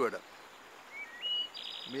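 A bird singing: a short phrase of whistled notes stepping up in pitch, ending in a quick high trill about a second and a half in.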